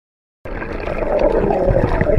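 Silent at first, then about half a second in a sudden muffled underwater rush of churning water and bubbles, from the cloud of air bubbles that a dive into the sea has stirred up.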